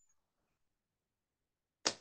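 Near silence, broken near the end by one brief sharp burst of noise just before speech resumes.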